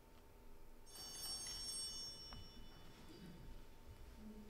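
A small bell struck once about a second in, its high ringing tones fading away over about two seconds: the signal for the start of Mass, at which the congregation stands. Soft shuffling and knocks of people rising from wooden pews run underneath.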